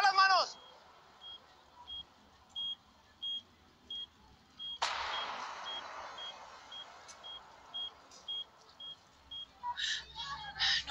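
A bomb's digital countdown timer beeping: short high beeps about every two-thirds of a second, coming a little faster toward the end. Just before the middle, a sudden burst of noise rises and fades away over a few seconds.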